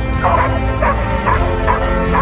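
Croatian sheepdog barking repeatedly at a helper in a blind, about two barks a second: the hold-and-bark of protection work.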